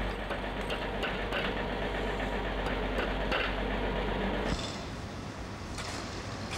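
Outdoor building-site background noise: a steady hum and rumble with a few faint taps. The background changes abruptly about four and a half seconds in, the low hum dropping out.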